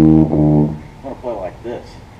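Sousaphone played softly: low, mellow held notes, deliberately too quiet, that stop about a second in.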